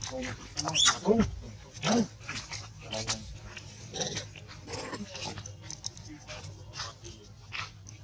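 Long-tailed macaques giving a string of short calls and squeals, roughly one a second. The loudest come in the first two seconds, and they grow fainter toward the end.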